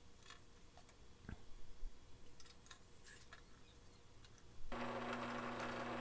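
A few faint ticks over quiet room tone, then near the end a drill press motor running with a steady hum cuts in abruptly.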